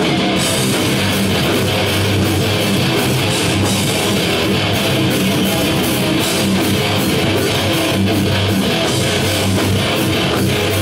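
Live hardcore punk band playing loud and without a break: distorted electric guitars and bass over drums.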